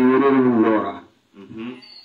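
A man's voice chanting in long, melodic held notes that stop about a second in, followed by a short, quieter sung phrase near the end.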